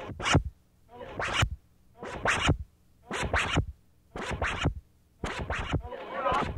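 Synclavier 9600 sampler playing a chopped, manipulated sample as short noisy bursts, about one a second, with near-silent gaps between them: stuttering electronic glitch music.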